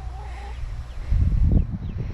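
Chickens clucking faintly in their run, with a low rumble on the microphone that swells about a second in.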